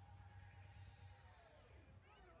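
Near silence, with only a faint low hum.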